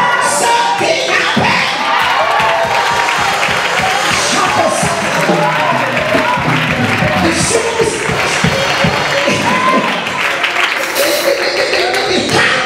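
Church congregation singing together and clapping in praise, with cheers from the crowd.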